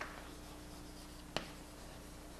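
Chalk writing on a blackboard: faint scratching strokes, with one sharp tap against the board a little over a second in.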